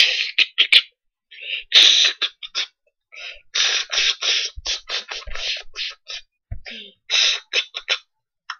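A boy beatboxing with his hand at his mouth: quick runs of sharp, hissing snare- and hi-hat-like mouth sounds, several a second, broken by short pauses about a second in and around three seconds in.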